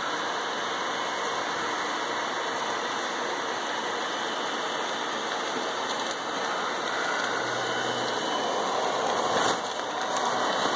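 The small blower fan of a Gemmy airblown inflatable pirate ship running steadily, with the nylon fabric rustling and crinkling as it fills with air. There is a louder crinkle of fabric near the end.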